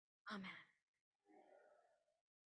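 A woman's voice saying "Amen", then a faint, brief sound about a second later; the audio then cuts off to dead silence.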